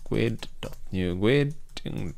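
Keystrokes on a computer keyboard: a handful of separate clicks as a line of code is typed, over a voice.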